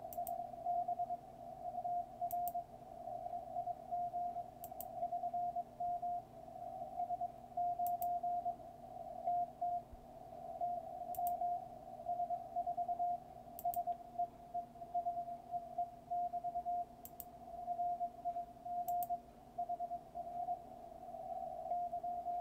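A Morse code (CW) signal on the 20-metre amateur band, heard through the receiver as a tone of about 700 Hz keyed on and off in dots and dashes over faint band hiss. A few faint clicks come every couple of seconds.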